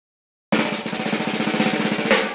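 A rapid snare drum roll opening a Bollywood song, starting suddenly about half a second in, with a few held instrument notes beneath it.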